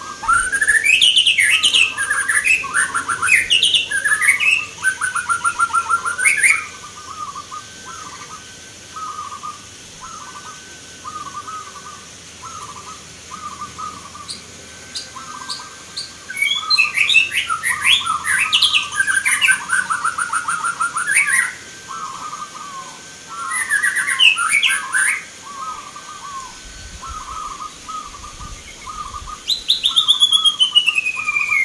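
Many zebra doves (perkutut) singing at once: a steady run of short cooing notes, with louder spells of fast, trilled calls near the start, in the middle and once more a few seconds later.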